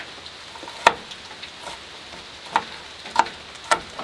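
A knife chopping an onion on a plastic cutting board: four sharp knocks, the first about a second in and the loudest, the other three close together near the end. Under them is a steady hiss of rain on a metal roof.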